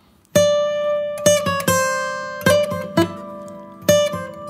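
Steel-string acoustic guitar: a chord struck about a third of a second in, then several more plucked chords and single notes that ring out, played as triad shapes following the song's chord progression.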